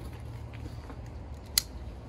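A single sharp click about a second and a half in, as a metal buckle of a Pedi-Mate child restraint harness is latched. A steady low hum runs underneath.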